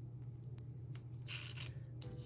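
Paper planner pages being handled: a single light click, then a brief rustle of paper sliding across a desk about a second and a half in, over a steady low hum.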